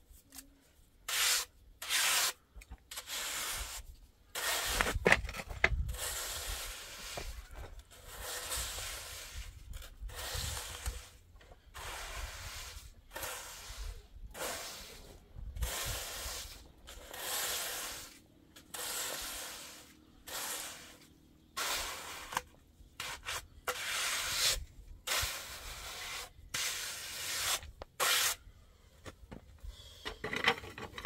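Flat steel trowel scraping over fresh wet cement as it is smoothed, in a long run of separate strokes, most under a second long, with short pauses between them. A louder knock comes about five seconds in.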